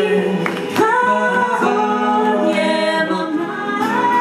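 Live acoustic pop music: a woman and men singing long held notes in harmony, with a few sharp hand claps or guitar strums under the voices.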